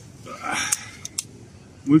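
A folding survival axe multitool handled and worked open by hand, giving two sharp clicks about a second in, a fifth of a second apart, after a short breathy rustle.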